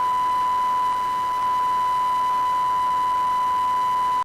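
Broadcast line-up test tone on a news feed's audio circuit: one steady, unbroken beep at a single pitch.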